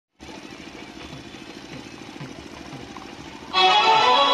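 A faint, rapid rhythmic sound, then about three and a half seconds in a brass band's music starts suddenly and loud, with several held notes sounding together.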